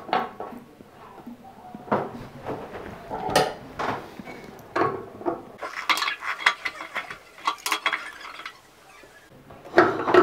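Metal clinks and light scrapes as the parts of a chrome basin tap are fitted back into the tap body with a metal tool. A few separate clinks come first, then a quicker run of them in the middle.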